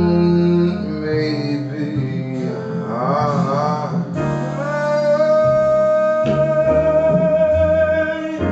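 Live jazz: a male vocalist singing with a band of piano, upright bass, drums and guitar. A single long note is held through the second half, wavering slightly near the end.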